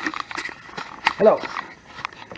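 Clicks and rustles from a handheld camera being picked up and moved, followed about a second in by a man saying "Hello".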